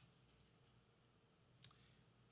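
Near silence, room tone in a pause between spoken phrases, broken by a single short, sharp click about one and a half seconds in.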